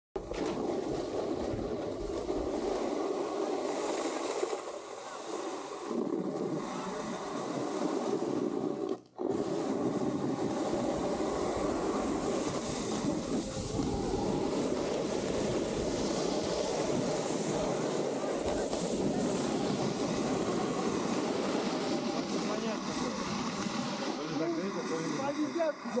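Snowboard edges scraping and carving over groomed snow, with wind rushing over the action camera's microphone from riding at speed; a steady rough hiss that cuts out briefly about nine seconds in.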